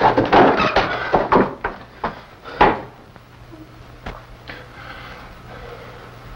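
A quick run of wooden knocks, bangs and clatters, with one hard knock a little past the middle, as furniture and household objects are handled in a farmhouse room. Then it goes quieter, leaving a low steady hum.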